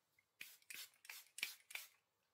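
Pump spray bottle misting onto the face: five quick spritzes about a third of a second apart, each a short hiss.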